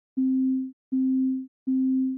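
A pure low sine-wave note repeating three times, about three-quarters of a second apart. Each note starts with a faint click, holds at a flat level and then fades. The note's decaying envelope is being squashed by heavy compression in Ableton's Compressor, whose ratio is turned up toward infinity, holding the start of each note down at the threshold.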